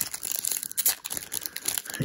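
A foil trading-card pack from a 2022 Topps F1 blaster box being torn open by hand, its wrapper crinkling and crackling irregularly as it is peeled apart.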